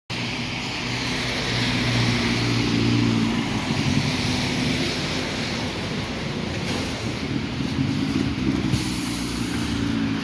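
Scania city bus idling at a stop, its engine humming steadily, over a constant hiss of rain and wet traffic. A brief, very high hiss sounds about nine seconds in.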